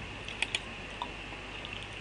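Computer mouse clicking a few times, two clicks close together about half a second in and another about a second in, over a steady faint hiss.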